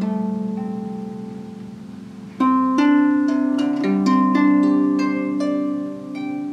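Marini Made 28-string bass lap harp being played: low notes ring and slowly fade over the first two seconds. Then a new chord is plucked and a short run of plucked notes follows, all ringing on together.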